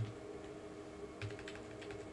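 Computer keyboard keys being typed in short, irregular runs of light clicks, including a quick backspace correction, over a faint steady hum.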